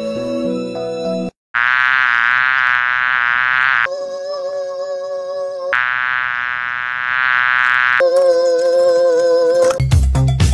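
Music cut off a little over a second in, then a high, buzzing, slightly wavering whine alternating with a lower steady hum, each heard twice: the sound effect of an animated fuzzy creature. Music with a beat comes in at the very end.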